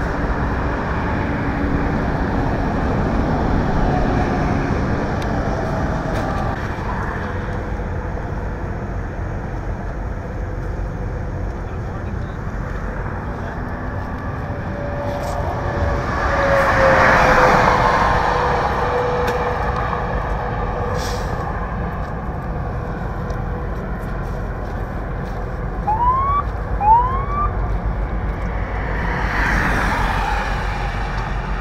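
Steady vehicle engine and traffic noise at a freeway crash scene, swelling as something passes a little past the middle. Near the end come two short rising siren chirps from an emergency vehicle.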